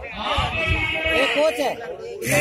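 Loud men's voices shouting close by, several at once, with no clear words, fading briefly near the end.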